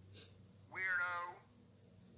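A single short, pitched, meow-like call about three-quarters of a second in, lasting well under a second, with a wavering pitch.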